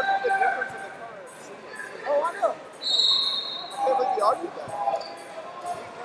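People shouting in short bursts in a large gym hall during a wrestling bout, with brief high-pitched squeaks between the shouts.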